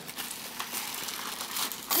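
Tissue paper crinkling and rustling as a toddler pulls it out of a paper gift bag, a steady run of small crackles.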